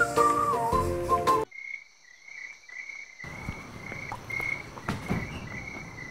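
Background music stops abruptly about a second and a half in. After a short silence, a steady high-pitched chirping of night insects such as crickets sets in, with a few faint knocks.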